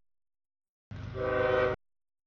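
A CSX freight locomotive's air horn sounds one short chord over the low diesel rumble about a second in, as the train nears the grade crossing, then cuts off abruptly. Before it the audio is silent, dropping out.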